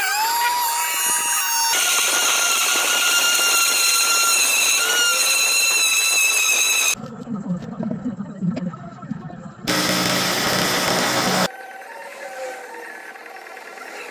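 Power cutter's diamond disc cutting a porcelain paving slab: a steady high whine over grinding noise for about seven seconds. After a quieter gap there is a second, shorter burst of loud cutting noise.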